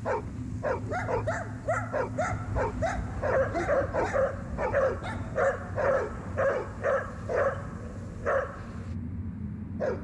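Stray dogs barking in a rapid, repeated string, about two to three barks a second, stopping shortly before the end, over a low steady hum. The dogs are harassing and chasing a snow leopard.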